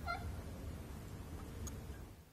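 Low room noise with a steady hum, picked up by the lectern microphone in the pause between speakers. A short, faint squeak comes right at the start.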